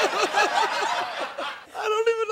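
A man laughing in a run of short, quick chuckles that trail off about a second and a half in.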